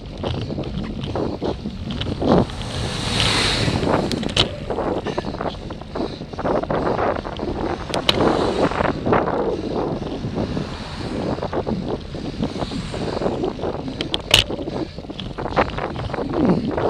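Wind buffeting an action camera's microphone on a bicycle, with oncoming motor vehicles swelling past twice: a bus about three seconds in, then a van and cars about eight seconds in. Sharp clicks and rattles sound now and then.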